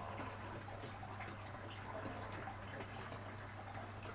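Aquarium filter return water pouring into the tank and splashing at the surface, a steady trickle over a steady low hum.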